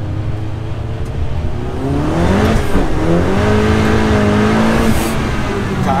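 Dallara Stradale's turbocharged 2.3-litre four-cylinder engine accelerating hard, heard from inside the car: the revs climb from about two seconds in, dip briefly at a gear change, then hold high before easing a little near the end.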